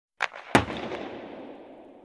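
Two sharp bangs about a third of a second apart, the second louder, followed by a rumble that fades away over about two seconds.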